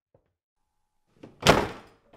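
A door slammed hard: one loud bang about one and a half seconds in, with a short ring after it.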